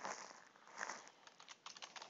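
Faint computer keyboard typing: a run of irregular keystroke clicks.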